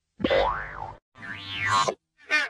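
Pitched-down cartoon sound effect: two sweeping tones about a second apart, each rising and then falling in pitch, with a click as the first one starts.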